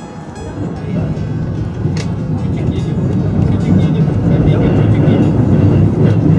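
Fløibanen cable-hauled funicular car pulling into its tunnel station, a low rumble on the rails growing steadily louder as it approaches, with a sharp click about two seconds in.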